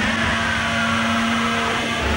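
A drum-free electronic passage in an industrial metal track: a steady synthesizer drone under a dense, machine-like noise wash, with a slowly falling sweep.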